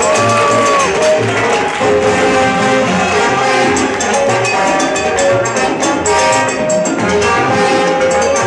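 Salsa music playing loudly, with horn lines over a steady, evenly pulsing bass beat.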